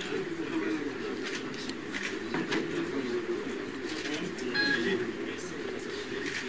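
Indistinct chatter of many people talking at once in a room, with frequent sharp clicks scattered through it and a short high beep-like note near the end.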